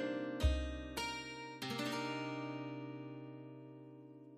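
Background music of plucked-string notes: a few notes in the first second and a half, then a final chord left to ring and slowly fade.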